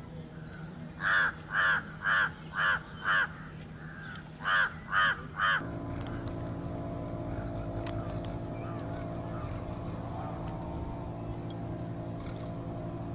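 A crow cawing: a run of five caws about half a second apart, then three more after a short pause. After that a steady low engine-like hum takes over.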